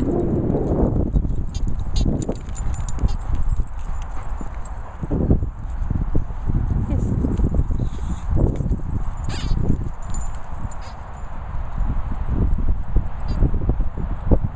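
Dogs playing right by the microphone: irregular scuffling, knocks and muffled thuds, with a few brief sharp clicks.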